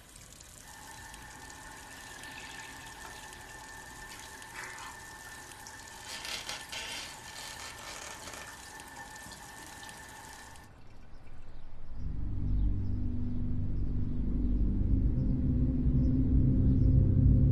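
A tap running into a ceramic bathroom washbasin with a steady hiss and a thin whistling tone, with louder splashing in the middle as water is scooped up to wash the face. The water stops suddenly, and about twelve seconds in, loud, low, deep music comes in and keeps building.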